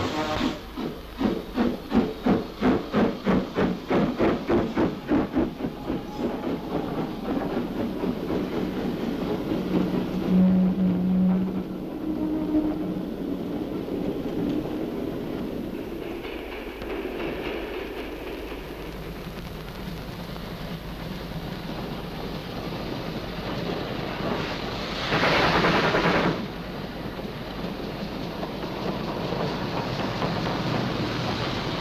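Steam locomotive chuffing, with about three or four exhaust beats a second that fade out after about six seconds, over a steady rumble and hiss. A short low tone comes about ten seconds in. Near the end there is a loud burst of steam hissing for about a second.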